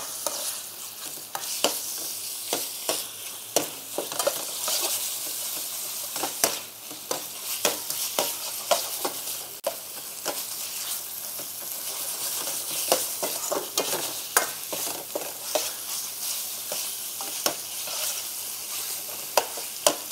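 Beef and chilli paste in oil sizzling in a hot wok over a gas flame, with frequent short scrapes and clinks of a metal ladle against the wok as it is stir-fried.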